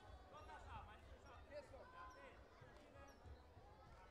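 Faint sports-hall ambience: distant voices echoing in a large hall over a low rumble.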